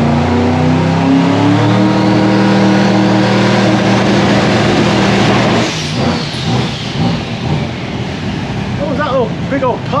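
A K5 Blazer's engine running close by. It rises in pitch over the first couple of seconds, holds steady, then drops off sharply about six seconds in, leaving a rougher, quieter run.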